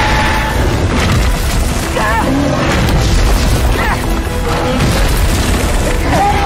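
Film action soundtrack: continuous deep rumbling booms of a giant monster's charge under a dramatic music score, with a few short cries over it.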